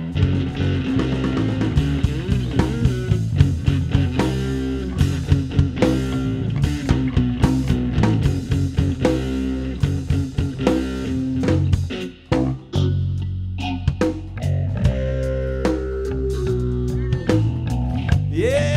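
Live rock band playing an instrumental passage: electric guitar over bass and a drum kit, with a brief drop-out about twelve seconds in.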